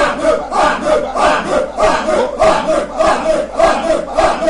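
A man's voice praying loudly and fervently in a rapid, rhythmic stream of short shouted syllables, about three to four a second.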